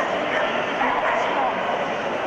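Crowded show-hall din: many people talking at once, with dogs yipping and barking among the chatter.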